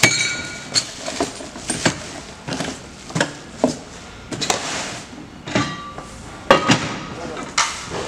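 Unpacking and handling noise: cardboard box flaps and bubble-wrapped parts rustling and crinkling, with a string of knocks and clinks as metal brake parts and small boxes are set down on a table. The sharpest knock comes about two-thirds of the way through.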